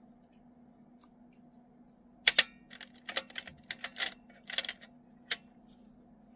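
Small metal paint tubes clicking and knocking against a metal watercolour tin as they are handled and set back in their slots: a quick run of about a dozen sharp clicks starting about two seconds in and stopping near the five-second mark.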